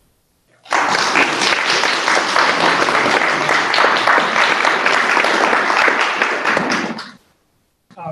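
Audience applauding, starting about a second in and dying away about six seconds later.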